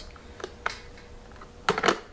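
Plastic clicking as a mattress vacuum's roller brush is worked loose and pulled out of its housing. There are two light clicks, then a quick cluster of louder clicks near the end.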